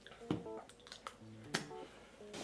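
Quiet background music of soft plucked notes, with two brief clicks, one just after the start and one about halfway.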